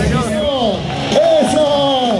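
A voice singing long, sliding notes, one held high note in the second half.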